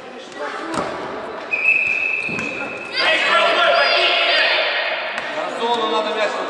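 A ball thuds once on the hall's wooden floor about a second in. From about three seconds, many children's high voices shout loudly and echo in the large gym.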